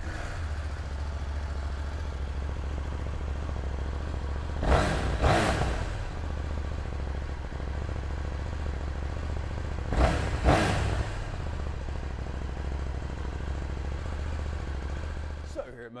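KTM 790 Duke L's parallel-twin engine idling steadily just after start-up. The throttle is blipped twice in quick succession about five seconds in, and again about ten seconds in. The engine is switched off near the end.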